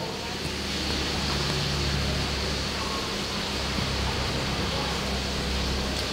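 Aquarium submersible pump running: a steady low hum under an even hiss.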